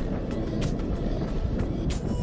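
Wind and rolling rumble on the microphone of a camera riding on a moving bicycle, with irregular sharp clicks.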